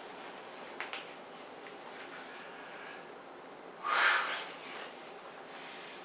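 A man's single sharp breath through the nose about four seconds in, against low room noise, as a lifter sets up under a barbell. There is a faint click about a second in.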